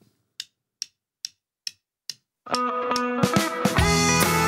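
A count-in of five sharp clicks, about two and a half a second, from the drummer's sticks; then the country band comes in with the song's intro, guitar notes first, bass and drums joining near the end.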